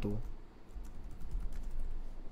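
Typing on a computer keyboard: a quick, irregular run of light key clicks.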